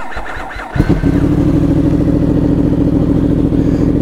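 A 2018 Yamaha R1's crossplane-crank inline-four spun on the electric starter. It catches a little under a second in and settles into a steady idle with an uneven beat that is much like a two-cylinder's at low revs.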